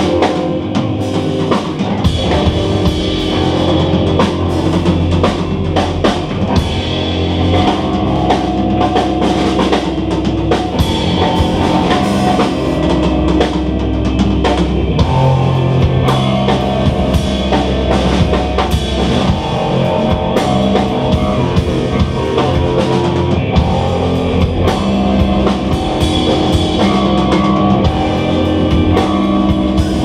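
Live oriental rock band playing an instrumental passage: a steady rock beat on a drum kit under bass guitar, electric guitar and oud.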